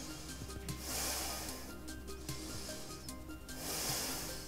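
Soft background music with two long breaths, one about a second in and another near the end, taken while holding a full backbend (wheel pose).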